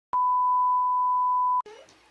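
TV colour-bar test tone: one steady, high, pure beep held for about a second and a half, cutting off suddenly.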